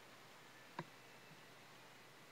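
Near silence: faint room tone, with a single short click of a computer mouse button a little under a second in.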